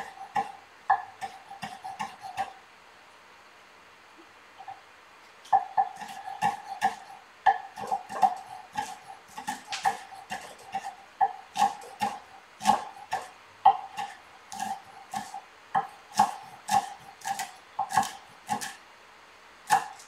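Chef's knife chopping fresh parsley on a wooden cutting board: a few knocks of the blade on the board, a pause of about three seconds, then steady chopping at about two to three strokes a second.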